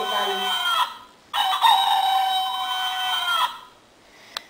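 Rooster crowing twice. A first long call ends about a second in, and a second, longer call follows and drops in pitch as it ends.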